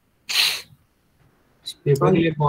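A person's short, hissy burst of breath, like a sneeze or sharp exhale, lasting about half a second. A voice starts speaking near the end.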